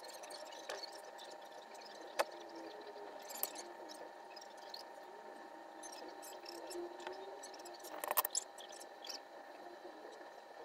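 Small handling sounds of hand soldering work: scattered clicks and taps as thin wire and a perforated matrix board are moved on a silicone mat. A quick cluster of clicks comes about eight seconds in, over a faint steady hum.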